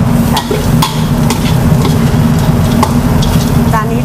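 Spatula scraping and knocking in a metal wok as long beans are stir-fried with shrimp paste and dried shrimp, sizzling, with a steady low hum underneath.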